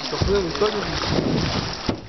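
Water and wind noise on the microphone from a small boat moving along a river, with a single sharp knock just before the end.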